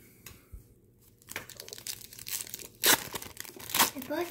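Wax-paper wrapper of a 1990 Pro Set football card pack being crinkled and torn open, starting about a second in, with two sharp rips near the end.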